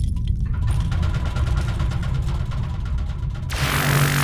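Loud cartoon sound effects: a heavy low rumble with a fast mechanical clatter. About three and a half seconds in, a sudden loud hissing blast cuts in as a giant robot fires a laser beam.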